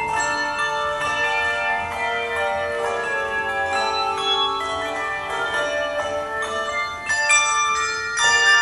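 Handbell choir playing a tango: many overlapping ringing bell notes sounding together and dying away, with a fresh set of bells struck about seven seconds in.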